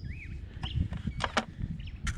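A few sharp clicks and light crunches of stones and gravel being handled and stepped on, over a low rumble. A single short bird chirp comes right at the start.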